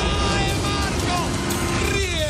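Water splashing as a person plunges into a pool, a dense rushing noise, with shouting voices and music underneath.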